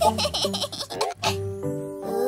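A cartoon baby's giggling laughter, in quick bursts through the first second or so, over light children's background music.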